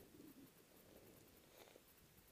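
Near silence: faint outdoor background hiss with no clear sound.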